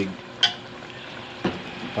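A metal spatula stirring sliced eggplant and vegetables in an aluminium pot, knocking sharply against the pot twice, about a second apart, over a steady sizzle from the pan.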